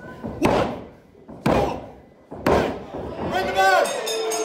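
A referee's three-count: three hand slaps on the wrestling ring mat, evenly a second apart, with voices, followed near the end by a short pitched sound.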